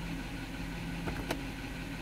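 Toyota Sequoia's 4.7-litre V8 idling steadily, heard from inside the cab, after its misfiring cylinder 2 ignition coil was replaced. A faint click comes just over a second in.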